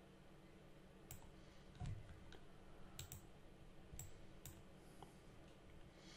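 Faint clicks of a computer mouse button, about five spread over a few seconds, with a soft low thump about two seconds in.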